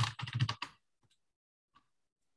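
Typing on a computer keyboard: a quick run of keystrokes in the first half second or so, then quiet apart from one faint tap near the end.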